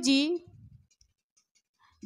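A woman's voice ends a phrase with one short word, then near silence for the rest of the pause.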